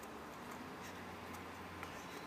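Faint light taps, about two a second, of cleated feet and a soccer ball being touched on grass during quick dribbling, over a steady faint low hum.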